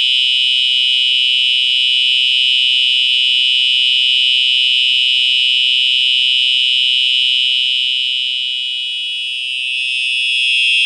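Fire alarm sounder putting out a loud, steady, unbroken high-pitched alarm tone. It has been set off by a magnet test of a duct smoke detector.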